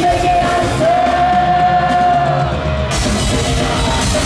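Live rock band with a female lead singer holding one long sung note over a thinned-out backing; the drums and cymbals come back in full about three seconds in.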